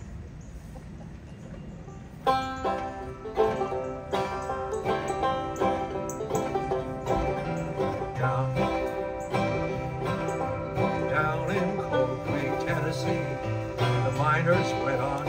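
Banjo and acoustic guitar playing together, a folk tune's instrumental opening that starts about two seconds in after a short quiet.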